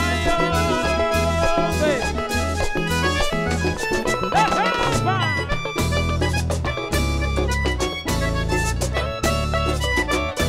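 Live vallenato band playing an instrumental passage: a diatonic button accordion carries the melody over a repeating bass line and steady percussion.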